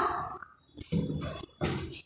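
A woman's voice ends on a drawn-out syllable that fades out in the first half-second. Then come two short, soft strokes of chalk on a blackboard, about a second and a second and a half in.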